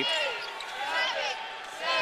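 Live court sound from a basketball game: the ball being dribbled on the hardwood floor and sneakers squeaking, over a low arena crowd murmur. The squeaks come at the start and again near the end.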